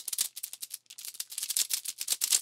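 A quick, uneven run of dry clicks, a rattling patter of many clicks a second, with no music under it.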